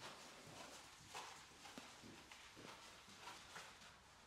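Near silence with faint, soft footsteps on artificial turf, about two a second, from a lateral walk in a mini resistance band.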